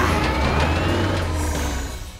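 Cartoon monster-truck engine sound effect, a loud rumbling drive with a rising whistling tone, over background music; it fades away near the end.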